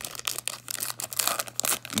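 Foil-lined baseball card pack wrapper being torn open and crinkled by hand: a rapid run of short crackles.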